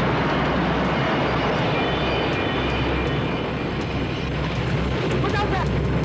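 Fire roaring: a loud, steady rush of flames filling a room after a sudden burst into flame.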